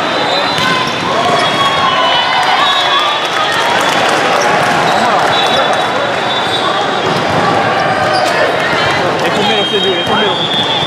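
Youth indoor volleyball in an echoing hall: volleyballs struck and bouncing on the court, shouting players and spectators, and shrill referee whistles held for a second or so, one about midway as the rally ends and another near the end.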